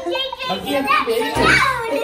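A young child's voice making wordless sounds.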